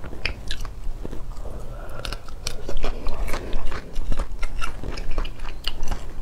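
Close-miked chewing of sauce-coated whole shrimp, with wet smacking and irregular crunchy clicks throughout.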